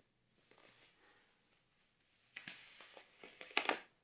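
Seamless tan nylon tights rustling against skin as they are gathered and drawn on over the foot and up the leg. The rustle is faint at first, grows louder about halfway through, and has a few sharper scratches near the end.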